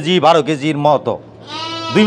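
A sheep bleating: one long, steady call near the end, after a man's voice in the first second.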